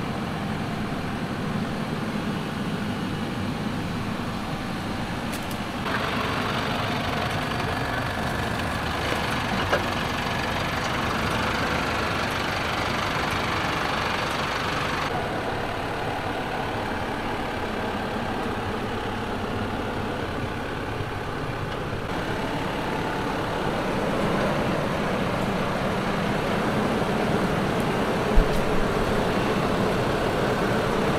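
Mercedes-Benz Unimog UHE 5023's 5.1-litre four-cylinder diesel engine running at low speed under load as the truck crawls over rough dirt and rocks; the sound changes abruptly several times. One short sharp knock near the end.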